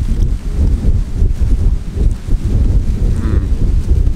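Wind buffeting the microphone: a loud, uneven low rumble, with a brief faint voice about three seconds in.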